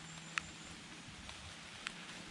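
Rain falling steadily through woodland, an even soft hiss, with two sharp taps, one about a third of a second in and one near the end.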